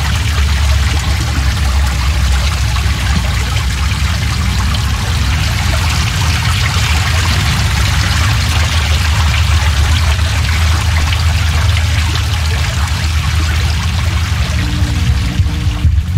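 Sound-design soundtrack of the talk played over the hall's speakers: a steady rushing noise over a heavy low drone, with a few held tones coming in near the end.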